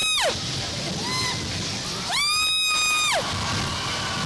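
A steady high-pitched tone sounding in blasts. The tail of one blast slides down in pitch at the start, a short blip comes about a second in, and then a longer blast of about a second swells in and slides down in pitch as it cuts off.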